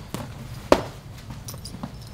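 Padded thuds of boxing gloves striking gloves as punches are parried: a weaker hit just after the start and a sharp, louder one about two-thirds of a second in.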